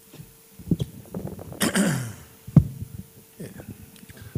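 A single loud cough-like burst from a person about one and a half seconds in, among a few low knocks, the sharpest just after it.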